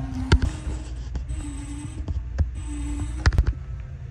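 Walk-in freezer evaporator fans running with a steady low hum. Cardboard boxes being brushed and bumped give several knocks and rustles, the loudest just after the start and a little over three seconds in.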